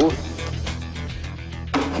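Background trailer music: low sustained notes held steady under the dialogue.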